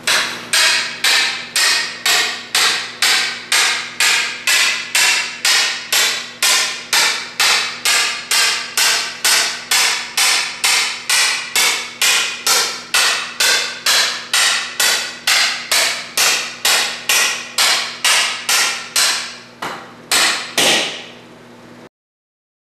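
Hammer pounding a snug-fitting wooden insert down into a square aluminium tube, in a steady rhythm of about two blows a second that stops about a second before the end.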